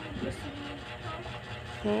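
Faint voices talking in the background over a low steady hum, with a louder voice starting right at the end.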